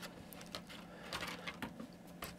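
Faint, scattered small clicks and rustles of fingers handling a clear plastic tray of miniature grass tufts, picking a tuft off it.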